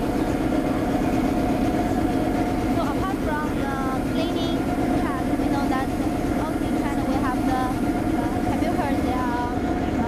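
Driverless street sweeper running as it drives slowly forward, a steady mechanical hum with a constant tone in it.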